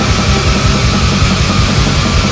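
Recorded heavy doom rock band music: distorted guitars, bass and drums in a loud, dense, unbroken wall of sound.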